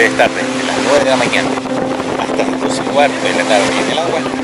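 A motorboat engine hums at a steady, unchanging speed, with people's voices over it.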